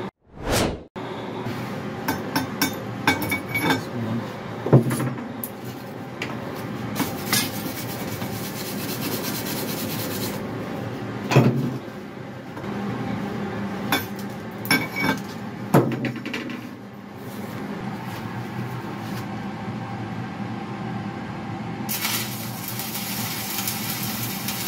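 Steel and stainless parts clinking and knocking as a cylindrical penetrator body is handled and set on a hull fitting, over a steady background noise. About two seconds before the end, a stick-welding arc strikes and crackles.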